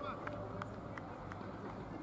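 Open-air ambience of a cricket ground: faint distant voices of players over a steady low hum, with a few light ticks.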